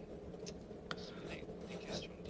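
Quiet pause over an open microphone: a faint steady low hum, two soft clicks about half a second and a second in, and faint breathy or whispered sounds.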